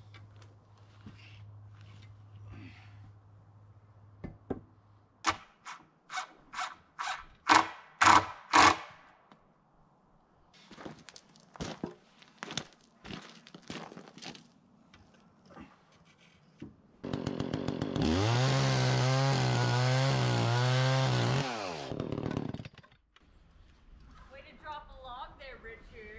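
A run of about ten sharp knocks of wood-building work, growing louder, then later a gas chainsaw that starts abruptly, runs hard for about four seconds with a slightly wavering pitch, and winds down.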